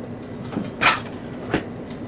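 Dishwasher being opened and its rack pulled out to get a cup: a short sliding rattle a little before the middle, then a sharp click.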